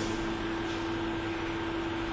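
Steady background hiss with a constant low hum running under it: the room and recording noise of a pause between words.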